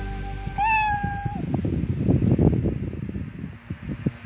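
A domestic cat meows once about half a second in, a call that rises and then holds. Close rustling and bumping follows.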